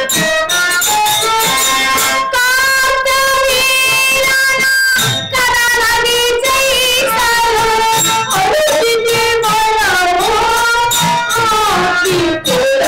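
Bayalata folk-theatre music: long, held sung notes that bend and waver in pitch, with instrumental accompaniment and a few percussion strokes near the start.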